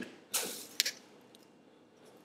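A red resistance band being handled and fixed at the foot of a metal bench frame: a short scraping rustle, then one sharp click about halfway through.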